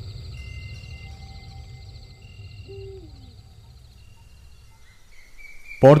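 Ambient background of short high bird-like calls and a steady high insect-like trill over a low rumble that fades away about five seconds in.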